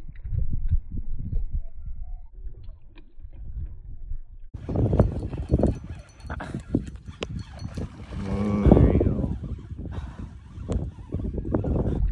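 Wind buffeting the microphone on an open boat while a bass is played on rod and reel, a low rumble that comes and goes. A short pitched sound rises for about a second just past the middle.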